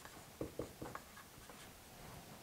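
Felt-tip marker writing on a whiteboard: a handful of short, faint strokes in the first second or so as the last letters of a word are written.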